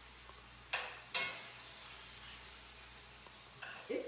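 Chicken and vegetables sizzling in a hot skillet. Two sudden sharp sounds come about a second in, then a hiss of frying that slowly fades.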